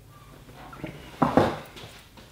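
Quiet room tone broken by a single short thump about a second in.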